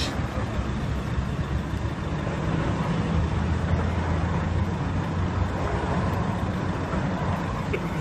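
A vehicle engine running steadily with a low drone, over street traffic noise.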